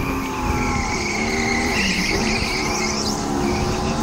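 A racing go-kart heard from its onboard camera while driving a lap: a steady motor whine over tyre noise and squeal, its pitch dipping briefly about halfway through.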